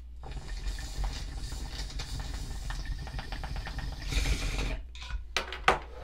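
Glass water bong bubbling steadily as smoke is drawn through the water, a rapid run of small bubbling ticks for about four and a half seconds. It ends in a brief hissing pull of air, then a few short sharp puffs near the end.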